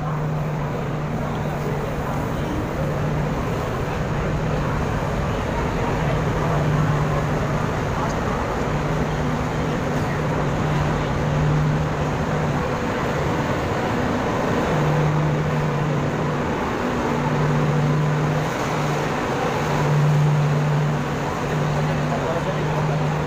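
Busy railway platform ambience: many voices talking and people moving about, with a low steady drone that comes and goes.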